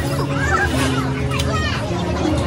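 Several people talking, some in high-pitched voices, over steady background music.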